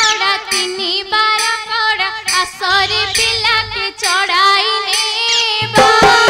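A young girl singing a melismatic Odia folk song, a single voice line with little accompaniment. Drums come back in just before the end.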